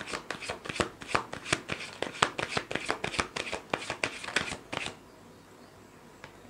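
A tarot deck being shuffled by hand: a rapid, uneven run of card-on-card slaps and flicks, several a second, that stops about five seconds in.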